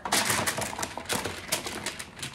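Chopped raw vegetables tumbling out of a plastic bowl onto a parchment-lined sheet pan, a rapid clatter of many small knocks.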